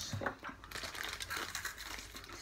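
Irregular crackly crunching of crisp nougat-and-hazelnut wafers being bitten and chewed.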